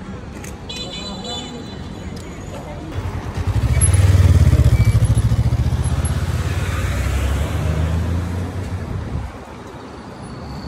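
A motor vehicle's engine passing close by on a street: a deep, evenly pulsing rumble that swells about three seconds in, is loudest a second later, then fades away over several seconds.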